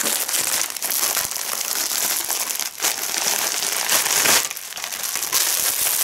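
Plastic packaging crinkling and rustling loudly as a parcel is handled and unwrapped by hand, with two brief lulls.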